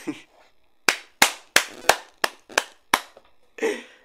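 A person clapping hands seven times in a steady run, about three claps a second, with a short breathy laugh just before and after.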